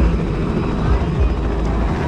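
Small helicopter's engine and rotor running with a steady low rumble as it takes off from the airfield, with crowd voices mixed in.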